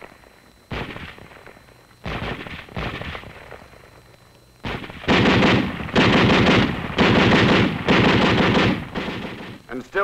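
A few separate gunshots, then a Browning Automatic Rifle firing four bursts of rapid automatic fire back to back, each just under a second long.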